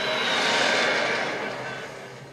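Film trailer sound design: a noisy whoosh with a faint falling whistle in it, swelling about half a second in and then fading away.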